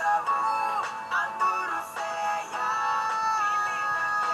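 Sinhala hip-hop/pop song playing: auto-tuned vocal whose held notes step sharply from pitch to pitch, over a synth backing track.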